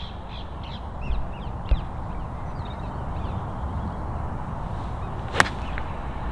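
A golf wedge striking the ball off the fairway turf: one sharp click about five and a half seconds in. Before it, birds call in short chirps over a steady low rumble.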